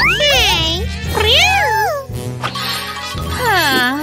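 A cartoon cat meowing three times, each meow drawn out and gliding up and down in pitch, over background music.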